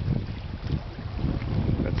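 Wind buffeting the microphone: a loud, uneven low rumble that swells and dips, covering the quiet knife work on the fish.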